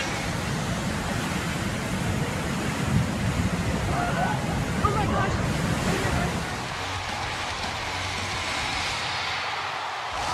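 Smoke bombs hissing as they pour out smoke, a steady rushing noise with faint voices in the middle; it eases about two-thirds of the way through.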